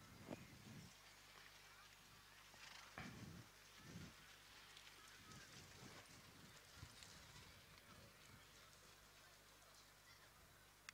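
Near silence: faint outdoor ambience with a few soft, irregular low thumps.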